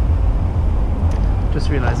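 Wind rushing over the camera microphone of a moving bicycle, a steady low rumble mixed with street traffic noise. A man's voice starts near the end.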